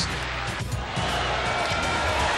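Background music with steady low bass notes under a highlight reel, dipping briefly a little over half a second in.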